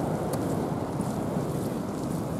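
Wind blowing across the phone's microphone: a steady low rush with no distinct events.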